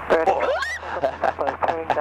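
A woman shrieking and laughing over steady cockpit noise during an aerobatic flight. A rising squeal comes about half a second in, then quick peals of laughter, several a second.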